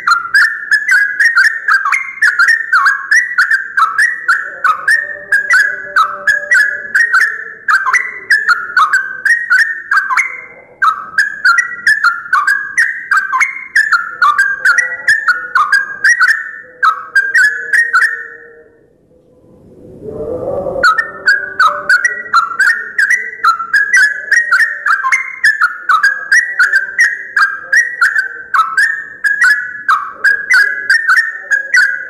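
Yellow-vented bulbul calling: a fast, loud string of short chattering notes, about three a second, broken by a pause of about two seconds just past the middle.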